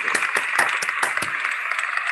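Applause over a video call: a dense run of quick hand claps over a hiss, squeezed by the call's compressed audio.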